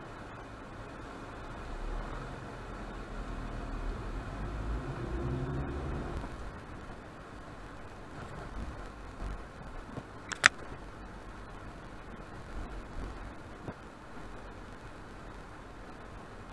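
Low car rumble heard from inside the cabin through a dashcam microphone. It swells for a few seconds with a hum that rises in pitch around five seconds in, then settles steadier. A single sharp click comes about ten seconds in.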